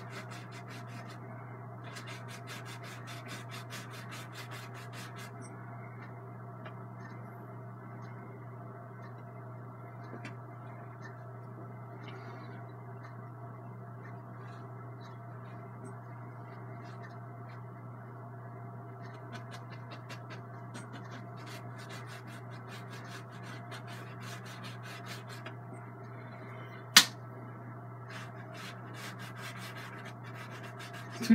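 Bristle fan brush scratching and dabbing on a painted canvas in runs of quick strokes, over a steady low hum. A single sharp click near the end.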